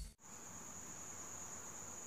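Quiet background: a faint, steady high-pitched tone over low hiss.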